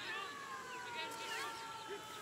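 A woman's high voice holding one long, drawn-out shout that slowly falls in pitch, with short shouts of players or spectators around it.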